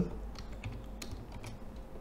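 Computer keyboard being typed: a handful of faint, separate key clicks at an uneven pace as a file name is entered.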